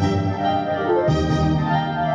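Symphony orchestra recording playing sustained chords, with a change of chord about a second in.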